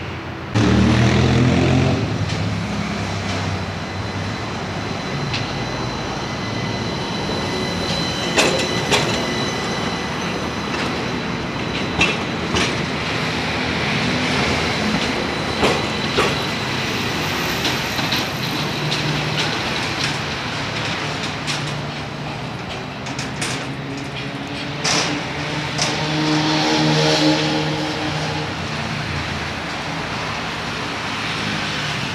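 Athens light-rail tram running past on its track: a steady rolling noise with a faint high steady whine, and several sharp clicks as the wheels run over rail joints and points.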